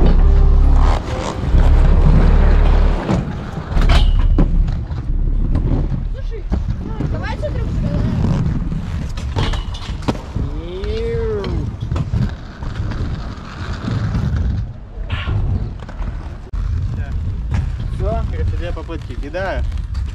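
Inline skate wheels rolling over concrete, with heavy wind rumble on the microphone in the first three seconds and a few sharp knocks from landings. Distant voices call out in the second half.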